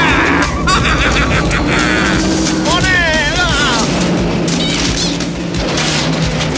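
An old Land Rover Series off-roader's engine running as it drives off the road and bounces through jungle undergrowth, mixed with film score music and a wavering voice.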